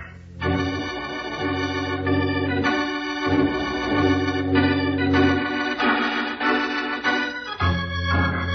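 Organ music playing a dramatic bridge of held chords that change every second or two.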